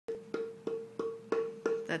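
A plank of 58-year-old tonewood tapped with a thin strip of wood, about three taps a second, each tap ringing on at the same clear pitch like a bell: the lively resonance of long-seasoned wood.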